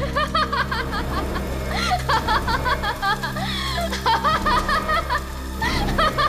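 A woman laughing in high-pitched, quick repeated bursts, in several runs with short pauses between them, over a steady low music drone.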